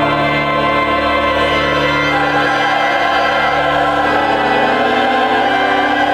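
Mixed choir of men and women singing held chords, with organ accompaniment underneath.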